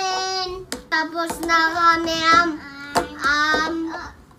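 A young child singing in about three long, held sing-song notes.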